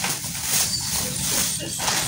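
Thin black plastic bag rustling and crinkling in irregular bursts as hands dig into it and pull an item out.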